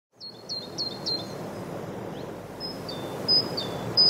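Birds chirping over a steady outdoor background rush that fades in just after the start: a run of four quick chirps in the first second, then a few spaced calls that drop in pitch.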